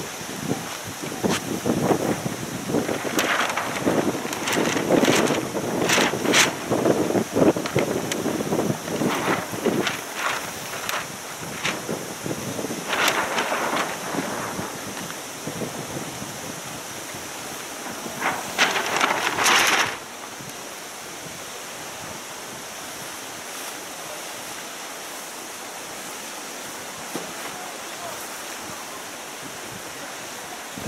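Wind buffeting the microphone with waves lapping on the lake, in heavy, uneven gusts for about twenty seconds, then settling abruptly into a steady, quieter rush.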